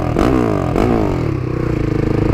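Husqvarna motorcycle engine revved in quick throttle blips, its pitch climbing and dropping twice, then holding steady, with its aftermarket exhaust detached so the engine runs with an extremely loud, open exhaust racket.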